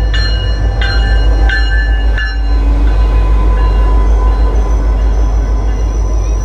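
MBTA GP40MC diesel locomotive pulling into the platform with a loud, steady low rumble. For the first two seconds its bell rings about once every 0.7 seconds, then stops.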